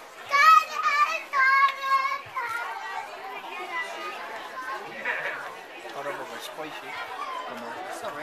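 A child's voice calls out twice, high and held, within the first two seconds, followed by the chatter of a crowd of adults and children.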